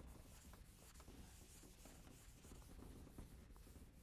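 Faint rubbing and light scuffs of a chalkboard eraser wiping across the board.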